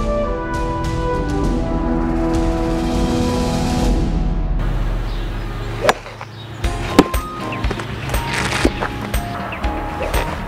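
Brass-led orchestral music for the first five seconds or so, then a sharp whack about six seconds in as a golf club strikes a ball off a tee. Further sharp knocks and clicks follow, the loudest about seven seconds in, over quieter music.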